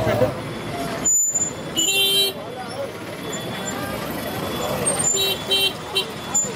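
Vehicle horn beeping: one beep about two seconds in, then two short beeps in quick succession near the end, over street noise and voices.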